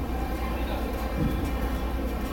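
Busy fish-market hall ambience: a steady low hum under a wash of indistinct voices.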